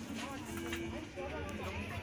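Indistinct chatter of several people talking at once in the background, with no clear words.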